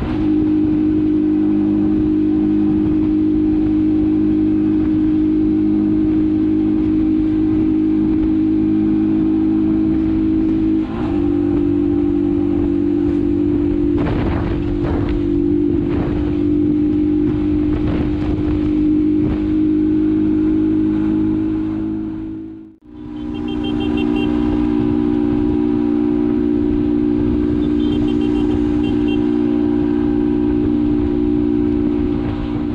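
Motorcycle engine running at a steady cruising speed, heard from the bike itself with road and wind noise. Its pitch steps once about eleven seconds in, and the sound briefly dips out and back about two-thirds of the way through.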